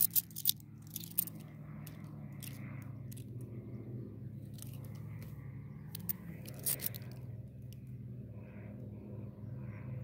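Clinks and scrapes of a stack of twelve-sided cupronickel Australian 50-cent coins being handled, with a cluster of sharp clicks near the start and more about six seconds in. Under them runs a steady, faintly wavering low engine drone.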